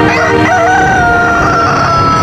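A rooster crowing once over sustained music: the call wavers briefly at the start, then holds one long, slowly falling note.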